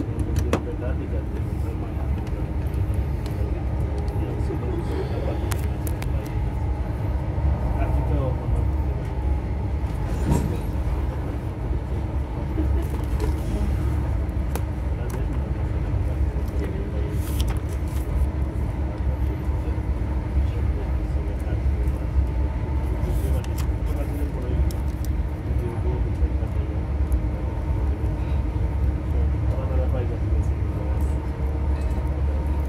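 Steady low rumble of a High Speed Train (InterCity 125) passenger coach running at speed, heard from inside. Wheels run on the rails throughout, with a few brief clicks.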